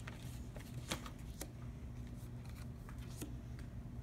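Paper cutouts being set down and slid on a large sheet of paper: light rustling with a few short, sharp taps, one at the start, two around a second in, and one near the end.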